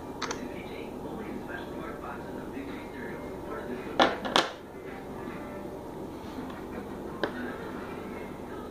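Faint background talk and room murmur. About halfway through come two sharp handling knocks close together as the recording phone is moved, and a single click near the end.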